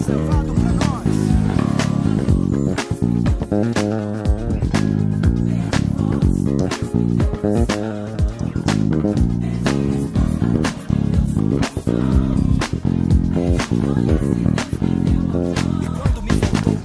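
deOliveira Dream KF five-string jazz bass with Bartolini pickups and deOliveira preamp, plucked with the fingers: a continuous run of quick notes with sharp attacks and a deep, full low end.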